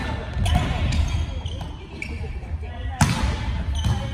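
Volleyball being hit during a rally: several sharp smacks of hands on the ball, the loudest about three seconds in, with players' voices ringing in a large hall.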